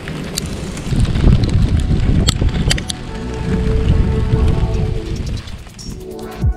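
Wind rumbling on an outdoor action-camera microphone in a snowstorm, with a few sharp clicks about two and a half seconds in. Background music comes in about halfway through.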